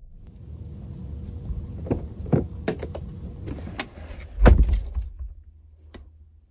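Keys jangling with several sharp clicks, then a car door shutting with a deep thump about four and a half seconds in.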